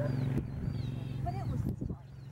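A steady low hum with birds chirping over it in short repeated calls; the hum fades out near the end.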